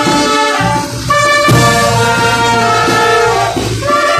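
Marching brass band of trumpets, trombones and sousaphones with bass drum, playing a Puno folk dance tune in held notes and chords.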